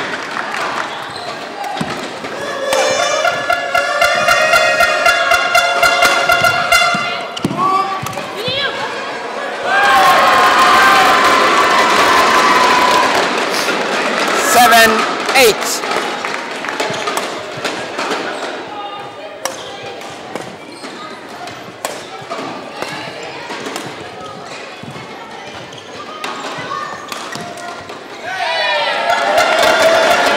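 Badminton play in a hall: rackets striking the shuttlecock and players' feet thudding on the court floor, a series of sharp clicks and thuds. After the point, shouts and voices in the hall follow.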